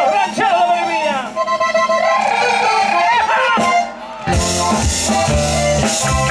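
A man's voice calling out over the stage PA, then about four seconds in a ranchera band strikes up: accordion and electric bass over a steady beat.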